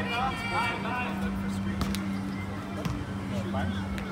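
Voices calling out across an outdoor basketball court over a steady low hum, with one sharp knock about two seconds in.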